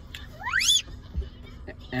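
A single short, high squeak that rises steeply in pitch about half a second in, followed just after the middle by a soft low thump.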